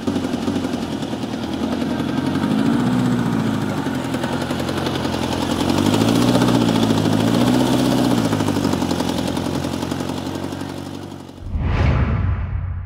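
Air-cooled Volkswagen flat-four engine running and being revved, its pitch rising and falling three times. A short whoosh near the end.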